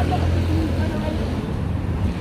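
Low rumble of road traffic, a vehicle engine running close by, heaviest for about the first second and then easing, with faint street talk over it.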